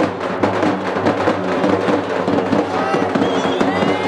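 Drum-heavy music with fast, dense beats over a steady low drone, and a few high gliding tones near the end.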